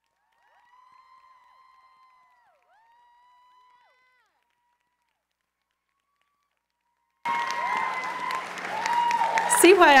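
Audience applause that cuts in abruptly about seven seconds in, with a steady low electrical hum under it as the stage microphone comes on. A woman starts speaking near the end. Before that there is near silence with a few faint held tones.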